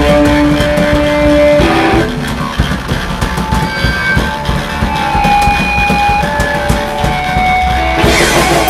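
Live rock band playing electric guitars, bass and drum kit. About two seconds in, the full band drops to a quieter passage of long held guitar notes over light drumming, building back toward the full band at the end.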